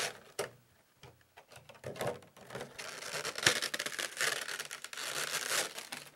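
Trading-card booster packs and their cardboard box being handled: crinkling and rustling with small clicks and taps, busiest over the last four seconds.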